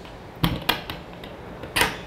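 Latch and diamond-plate door of a fire engine's rear compartment being handled: two sharp clicks about half a second in, a few lighter ticks, then a brief scrape near the end.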